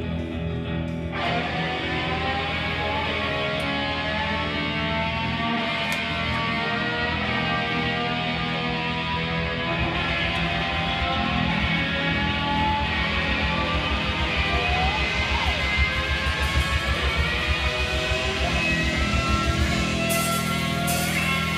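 Live rock band playing an instrumental passage: electric guitar lines over bass and drums, coming in about a second in, with the drums growing busier in the second half.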